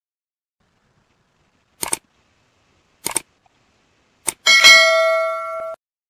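Three short sharp clicks about a second apart, then a bell-like ding that rings for about a second and cuts off abruptly.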